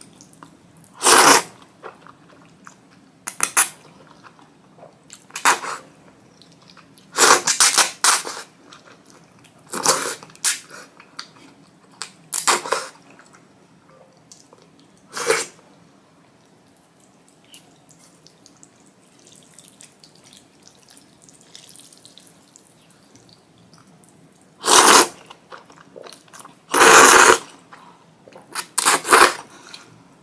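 Ramen noodles slurped loudly in short, sharp bursts, about a dozen in all, some single and some in quick runs of two or three, with a long quieter gap in the middle and soft chewing between.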